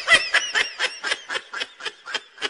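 A person laughing in a rapid run of short 'ha' bursts, each high and bending in pitch, slowing and growing fainter as it goes. The laugh is a sound effect added over the end card.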